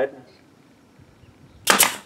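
Pneumatic nail gun firing once near the end, a single sharp shot driving a nail into OSB board.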